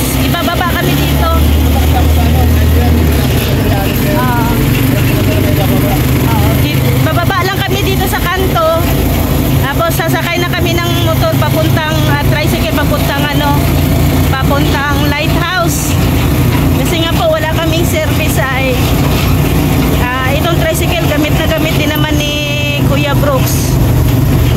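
Motorcycle engine of a sidecar tricycle running steadily while under way, with road and wind noise, heard from inside the sidecar.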